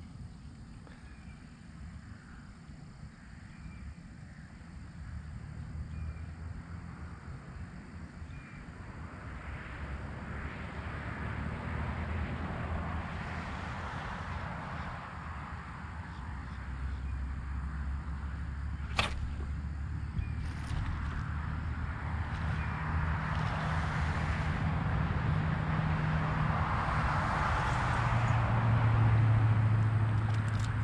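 A motor's steady low hum growing gradually louder and drawing closer, loudest near the end, with a single sharp click about two-thirds of the way in.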